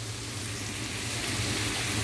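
Fish frying in hot coconut oil: a steady sizzling hiss that grows slightly louder, over a low steady hum.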